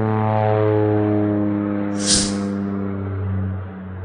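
Cinematic intro sound design: a deep, sustained gong-like drone whose overtones slowly fall in pitch, with a short whoosh about two seconds in.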